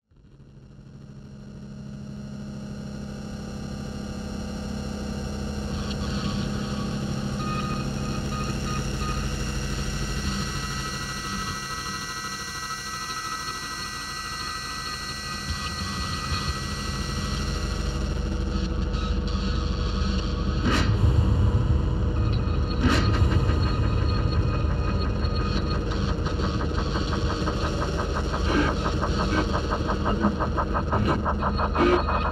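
Opening of a grindcore band's noise intro track: a low drone with several steady held tones fades in from silence and slowly swells. About two-thirds of the way through the rumble deepens, two sharp hits land a couple of seconds apart, and a fast, even rattling pulse runs on after them.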